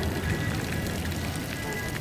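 Splash-pad fountain jets spattering steadily onto wet stone paving, with music playing underneath.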